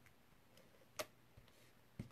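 Near silence broken by one sharp click about halfway through and a fainter one near the end, as an adhesive tape runner is picked up and handled.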